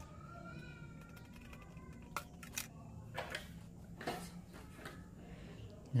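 Faint, scattered clicks and taps of wire ends and terminal screws being handled on a contactor wiring board. A faint wavering tone runs through the first second and a half.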